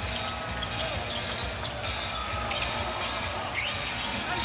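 Basketball being dribbled on a hardwood court, the bounces heard over steady crowd noise in a packed arena.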